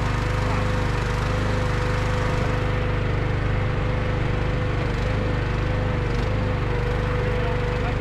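Bossworth Group firewood processor running steadily, a constant whine above an even low drone, with no cutting or splitting heard.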